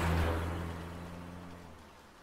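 A truck engine running steadily as the truck drives off, its hum fading away into the distance.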